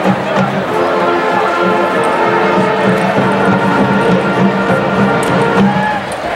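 Marching band's brass and winds playing held chords that change every second or so, cutting off shortly before the end, with crowd noise underneath.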